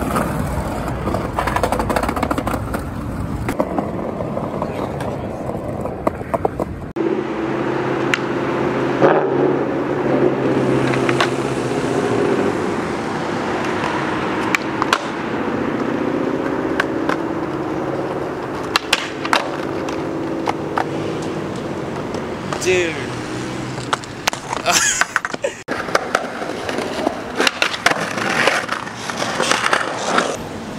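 Skateboard wheels rolling on concrete sidewalk, with sharp clacks of the board popping and landing flat-ground tricks several times through the stretch.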